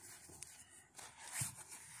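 Faint rustling and scuffing of a cloth drawstring pouch being handled and opened as a small projector is slid out, with one slightly louder brush of fabric about one and a half seconds in.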